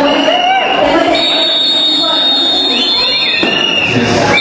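A woman speaking into a handheld microphone, her voice amplified over a PA system.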